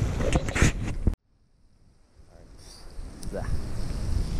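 Wind buffeting the microphone, with a few sharp knocks, cut off abruptly about a second in; after a moment of near silence, faint outdoor wind noise fades gradually back up.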